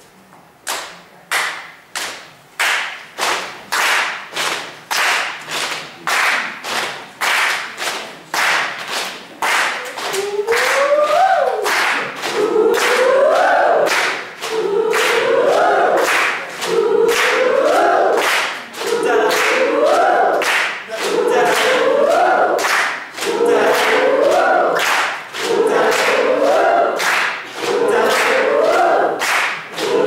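A hall audience clapping a steady beat together, a little over two claps a second, in a group rhythm exercise led from the stage. About ten seconds in, they also start singing in chorus: one short rising phrase, repeated about every two seconds over the claps.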